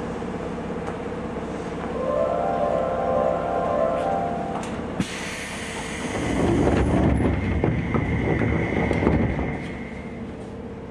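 Seibu 2000 series commuter train standing at a platform. A steady chime-like tone sounds for about three seconds, then a sharp click about five seconds in, then a louder rumbling rush as the sliding doors close.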